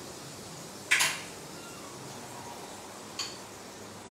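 Butter sizzling steadily in a frying pan on a gas burner. A sharp metal clank comes about a second in, and a lighter click just after three seconds.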